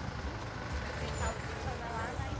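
Outdoor ambience: a steady low rumble with faint voices of people in the background.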